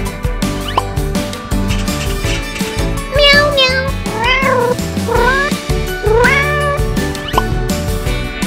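Background music with a steady beat, over which a cat meows four times in a row midway through, each meow short and mostly rising in pitch.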